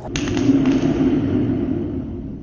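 A 12 V car alternator spun by hand with a sharp pull on a thread wound around its pulley: it starts suddenly, whirring, then slowly runs down over about two and a half seconds.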